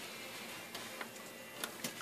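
Quiet room tone with a few faint light clicks, about a second in and twice near the end, from a soldering iron and wire being handled on a tabletop.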